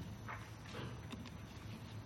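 A few faint, irregular knocks and taps from handling things at a lecture desk, over a steady low room hum.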